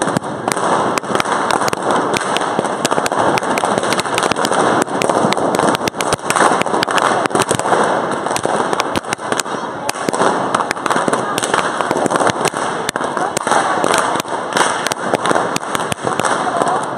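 Many balloons from a large balloon-sculpture dragon being popped by a crowd, a rapid, irregular run of sharp pops throughout, over the steady chatter of many voices.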